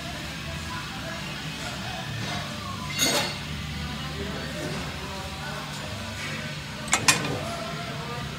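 Hard metal clinks as a hydraulic lifter is handled and fitted into the tappet grinder's spindle collet: one about three seconds in and two sharp ones close together near the end, over a steady low hum.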